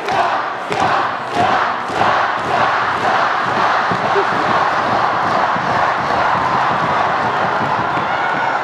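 Large crowd of teenagers cheering and chanting in rhythm, loud enough to drown out the speaker, with a pulse about twice a second in the first few seconds.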